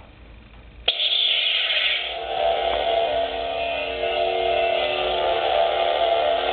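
Master Replicas lightsaber soundboard playing its Return of the Jedi ignition sound: a sudden burst about a second in that fades over a second, settling into a steady electronic hum of several held tones.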